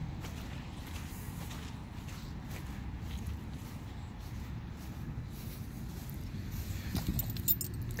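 Footsteps of a person walking across grass over a steady low rumble, with a light metallic jingle of keys in the last second.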